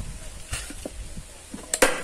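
A hand staple gun fires near the end with a sharp double clack, driving a staple through the upholstery covering into the wooden seat board. Faint handling clicks come before it.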